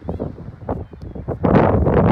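Wind buffeting the phone's microphone as a rumbling rush, uneven and gusty, growing much louder about one and a half seconds in.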